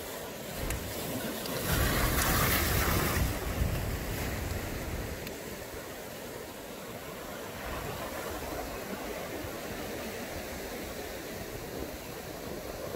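Ocean surf washing against a rocky shore with wind noise, steady apart from a louder rush of about a second and a half near two seconds in.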